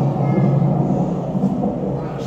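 A loud, low rumble filling the hall, easing off near the end.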